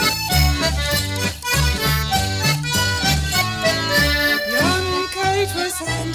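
English folk band playing an instrumental break of a dance tune between sung verses: squeezebox-type free-reed instruments carry the melody over steady bass notes about twice a second.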